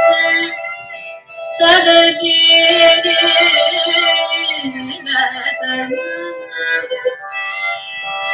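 Carnatic vocal music: a woman singing long held and gliding notes in phrases, with a short pause about a second in, accompanied by violin and no drumming.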